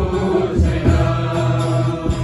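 People singing a worship song together, led by a man's voice, with a guitar strummed along and holding steady sustained notes.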